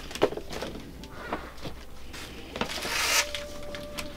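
Hard pieces of white-chocolate cookies-and-cream bark being picked out of a plastic bag: scattered light clicks and knocks, then a louder plastic rustle about three seconds in.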